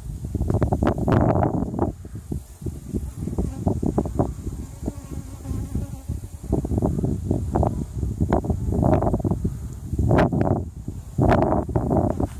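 Honey bees buzzing close to the microphone, swelling and fading in loudness as they fly past; one bee is agitated and keeps circling near the beekeeper.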